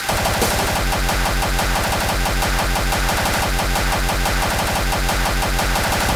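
Harsh, distorted industrial dance (EBM/noise) instrumental: a rapid, relentless pounding low beat under a dense wash of abrasive noise, kicking in abruptly at the start.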